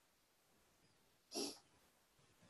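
Near silence broken by one short breath close to a microphone, about one and a half seconds in.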